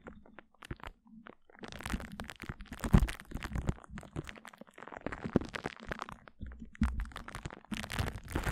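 Glue stick worked directly on a microphone, giving sticky, rapid clicks and pops. They are sparse for about the first second and a half, then come thick and close together.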